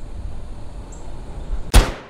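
Low wind rumble on an outdoor microphone, then, near the end, one short, loud whoosh sound effect.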